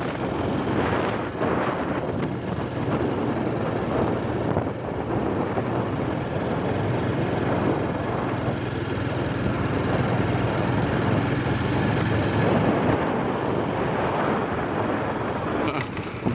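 A motorcycle being ridden at steady speed: the engine drones low and even under heavy wind noise on the microphone.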